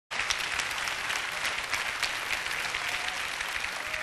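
Studio audience applauding, a dense, steady clapping.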